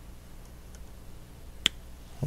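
Small scissors snipping through a strand of yarn: one short, sharp click about one and a half seconds in, over quiet room tone.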